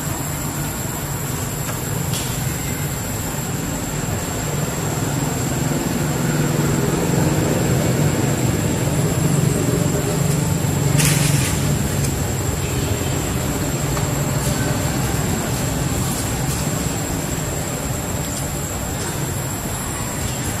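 A steady low motor rumble that swells toward the middle and then eases off, with a thin constant high-pitched tone above it and a brief hiss about halfway through.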